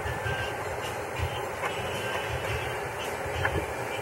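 A saucepan of broth-based sauce with beans and vegetables simmering on an electric stove, giving a steady low rumble with faint bubbling ticks.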